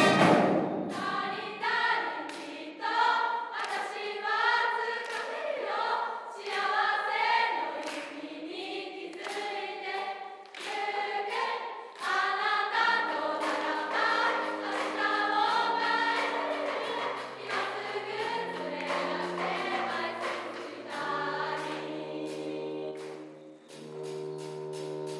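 A group of young women's voices singing together over a steady sharp beat about twice a second. From about halfway through, long held low notes sound under the singing.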